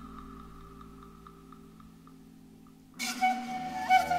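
Background music: a quiet, soft held tone with faint light ticks fades away, then about three seconds in a new, much louder passage of sustained tones begins suddenly.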